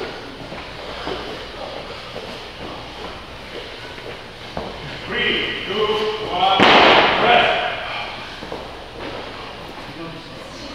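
Workout sounds in a gym: people moving with weight plates, a raised voice, then a sharp thud about six and a half seconds in, the loudest sound, followed by about a second of noise.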